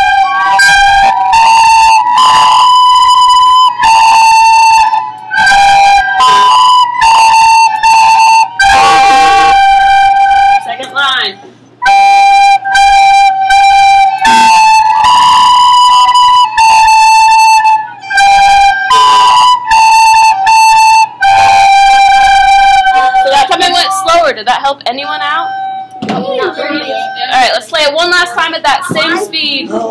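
A class of children playing a slow, simple tune together on recorders, moving among three neighbouring notes starting on G, with a short break about halfway. The playing stops about five seconds before the end and children's voices take over.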